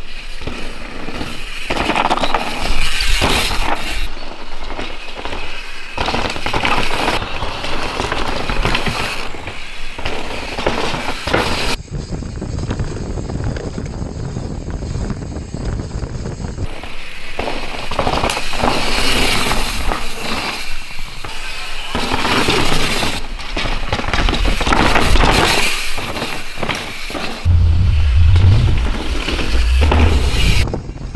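Yeti SB150 mountain bike ridden hard down a dirt forest trail: tyres tearing through loose dirt and berms, with the bike rattling over roots and rocks, in several cut-together shots. In the stretches filmed from the frame-mounted camera, the rattle and rush are close and loud.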